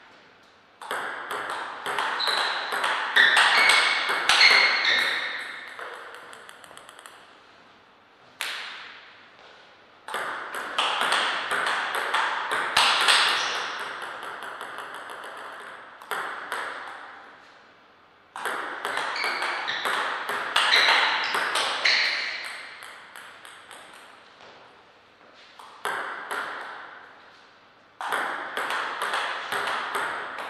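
Table tennis rallies: a celluloid-type ball clicking back and forth off the table and the rubber-faced bats in quick runs of a few seconds, about five rallies with short pauses between them. Short high squeaks come now and then during the rallies.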